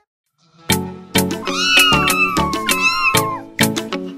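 Silence for under a second, then an upbeat music jingle with a steady beat starts. A cat meows over the music in drawn-out calls that rise and fall, from about a second and a half in until shortly before the end.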